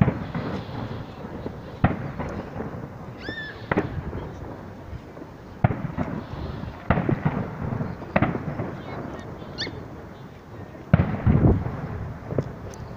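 Aerial fireworks shells bursting: a sharp bang every one to three seconds with a low rumble between them, the loudest about eleven seconds in.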